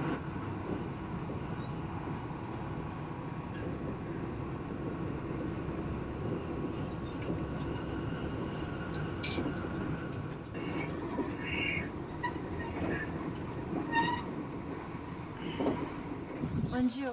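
Passenger train running, heard from inside the carriage: a steady rumble of wheels on the track, with a few short high squeaks and clicks in the second half.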